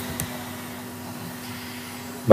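Steady low hum and hiss of background room tone, with a short click right at the start.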